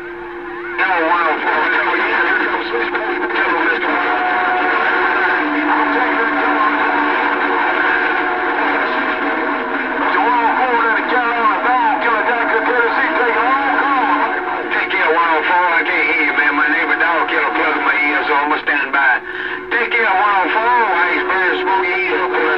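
Cobra 2000 CB radio's speaker on channel 6 (27.025 MHz) carrying long-distance skip: a jumble of overlapping, garbled voices under steady heterodyne whistles and wavering tones.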